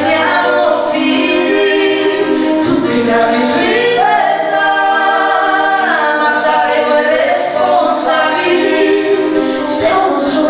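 A man and a woman singing an Italian song together live, with held notes, accompanied by acoustic guitar, keyboard and violin.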